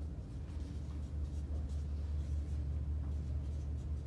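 Dry-erase marker stroking across a whiteboard as words are written: a series of faint short scratchy strokes, over a steady low hum that is the loudest sound.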